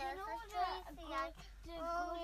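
A young girl's high voice, drawn-out and sing-song, half singing and half talking.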